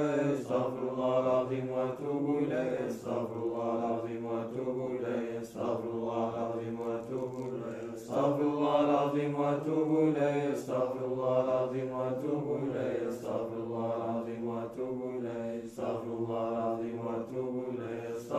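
Unaccompanied Islamic devotional chanting (dhikr): a melodic vocal phrase repeated over and over, each phrase lasting about two to three seconds.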